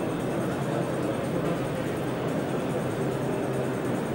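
Diesel engine of a heavy military off-road vehicle running steadily under load as it drives over rough ground.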